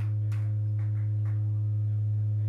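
A steady low drone from the band's amplified gear on stage: one held low tone with faint overtones above it, unchanging in pitch and level.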